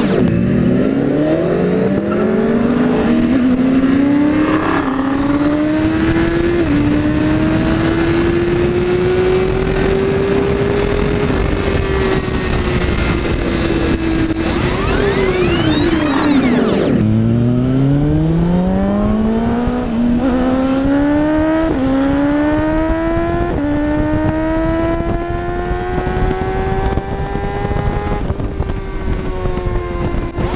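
BMW S1000RR inline-four sport bike accelerating hard through the gears, its engine note climbing and dipping briefly at each upshift, with wind noise on the helmet camera. It makes two full-throttle pulls, the second starting from low revs about halfway through and shifting up three times in quick succession.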